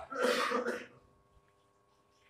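A man clearing his throat once into a close headset microphone, a rough, breathy rasp lasting under a second.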